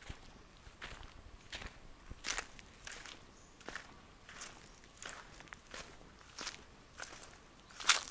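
Footsteps of someone walking on dry sandy dirt, a crisp crunching step about every two-thirds of a second, with one louder step near the end.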